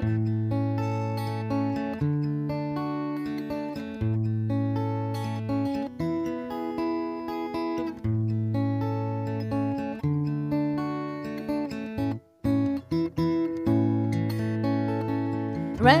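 Solo steel-string acoustic guitar playing an instrumental interlude, strummed chords over bass notes that change about every two seconds. The sound drops almost to silence for a moment about twelve seconds in.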